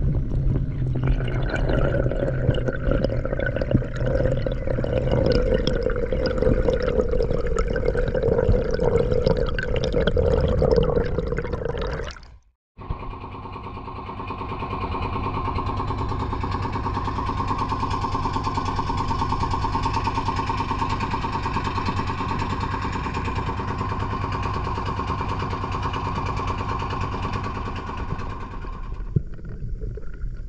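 A steady drone for the first twelve seconds, cut off abruptly, then a small wooden boat's engine running steadily as the boat travels over open sea.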